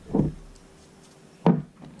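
Two dull thumps of a leather baseball glove being set down and handled on a wooden tabletop, the first just after the start and a sharper one about a second and a half in.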